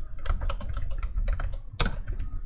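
Typing on a computer keyboard: a quick, irregular run of keystrokes, with one louder keystroke near the end.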